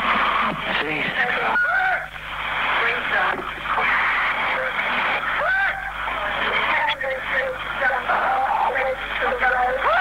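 Police two-way radio recording: a badly wounded officer's voice calling for help, strained and unintelligible, over a narrow, hissy radio channel.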